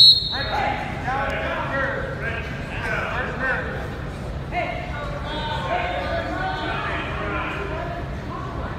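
A referee's whistle gives one short, shrill blast that stops the wrestling. Shouting voices of coaches and spectators follow, echoing in a gym.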